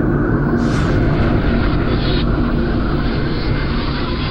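Loud, steady rumbling roar with a brief whoosh about half a second in.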